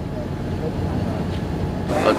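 Steady low rumble of outdoor street noise, such as a vehicle running on the street.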